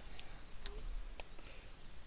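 Three light, sharp plastic clicks, the middle one the loudest, from LEGO minifigure parts being handled and snapped together.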